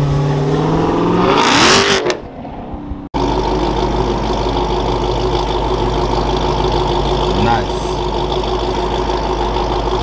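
Dodge Challenger's V8 accelerating, its pitch rising for about two seconds, then after a brief drop settling into a steady, low idle.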